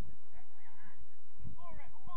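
Several short honking calls in quick succession, overlapping in the second half, over a steady low rumble.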